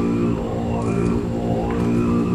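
Tibetan Buddhist monk chanting in a deep, droning voice held on one low, steady pitch, with overtones shifting slowly above it.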